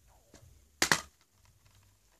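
Plastic Blu-ray case snapping open: a sharp double snap a little under a second in, amid faint handling rustle.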